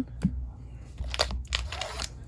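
Foil Pokémon booster pack wrapper crinkling as a pack is pulled out of the booster box, in a few short crackly bursts during the second half, after a light click near the start.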